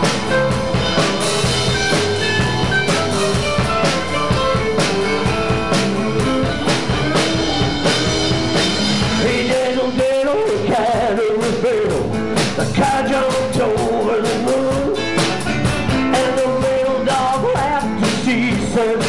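Live band playing a rock-and-roll blues number on electric guitars, bass guitar and drum kit.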